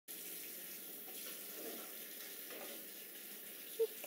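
Steady hissing background noise, with a short voice-like sound just before the end.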